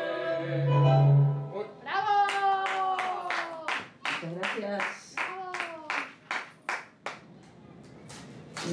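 A tango song ends on a held final chord with a loud deep bass note, which stops about a second and a half in. A small audience then claps in an even beat, about three claps a second, with voices over it.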